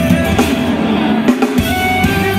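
Loud live pop concert music played over a PA, recorded from inside the crowd; an instrumental stretch without vocals. The bass drops out briefly about a second and a half in.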